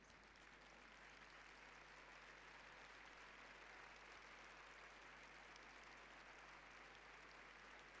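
Faint, steady applause from a large crowd, building slightly over the first couple of seconds.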